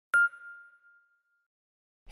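A single bright, bell-like ding struck once and fading away over about a second: a logo intro sound effect.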